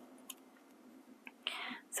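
Mostly quiet room tone with two faint ticks of a small paper sticker being peeled from a sticker book and handled, then a soft breath near the end.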